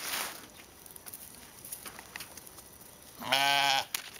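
A sheep bleats once near the end, a single call lasting a little over half a second. There is a brief soft rustle at the start.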